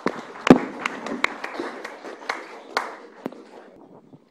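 Meeting-room noise as one speaker leaves the microphone and the next steps up: a low rustle of movement with scattered sharp taps and knocks, dying away shortly before the next voice.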